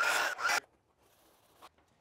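Short rasping, rubbing strokes against plywood, a few in quick succession, stopping about half a second in.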